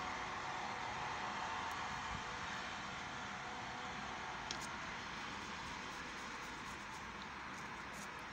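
Steady, even hiss of a car's interior that fades slightly, with one faint click about four and a half seconds in.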